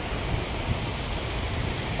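Wind buffeting the microphone with a steady low rumble, over the wash of small waves on a sandy beach.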